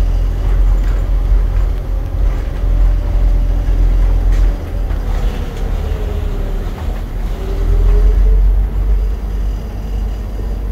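City bus running, heard from inside the passenger cabin: a steady deep engine and road rumble with a faint whine that dips and rises in pitch, and a few brief rattles.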